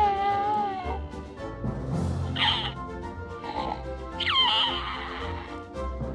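Grogu Greetings sound-and-motion ornament playing Grogu's recorded baby coos and babbles from its small battery-powered speaker. A long held coo comes first, then shorter babbling calls about two and a half and four and a half seconds in, over soft background music.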